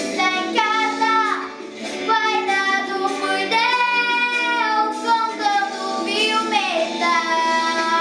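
A young girl singing a melody over an instrumental backing track, holding long notes with sliding pitch changes.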